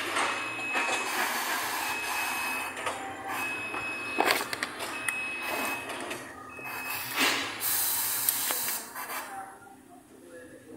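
Tyre-shop work noise: a continuous hiss like compressed air, broken by a few sharp metallic knocks, with a louder burst of hiss in the last couple of seconds before it dies away.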